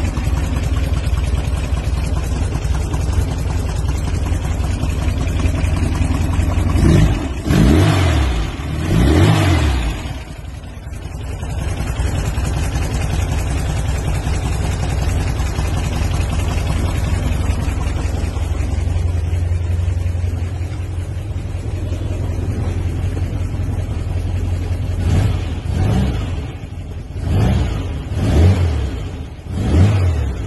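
Air-cooled 2276cc VW flat-four with a W110 camshaft and dual Weber 40 IDF carburettors, running through Vintage Speed Classic Sport mufflers: it idles steadily, is revved up and let fall three times about seven to ten seconds in, then blipped several times in quick succession near the end.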